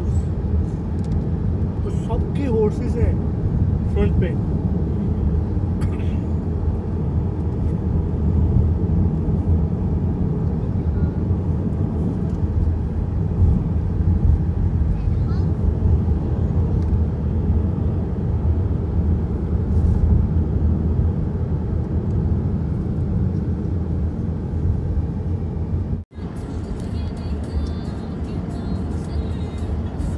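Steady low road and engine rumble heard from inside a moving car's cabin. Near the end it breaks off suddenly for an instant, then the rumble returns with faint music over it.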